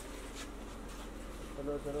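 A low, steady hum under faint voices, with a man calling out a word near the end.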